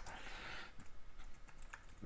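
Faint, irregular key clicks of a computer keyboard being typed on.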